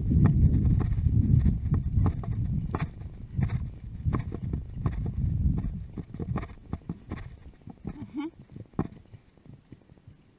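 Horse's hooves clopping along a grassy forest track over a low rumble on the head camera, the steps thinning out and the sound dropping after about six seconds as the horse slows to a halt.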